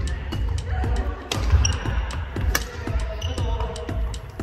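Badminton rackets striking a shuttlecock and players' shoes hitting a wooden gym floor during a rally: a series of sharp, irregular knocks over background music with a steady bass.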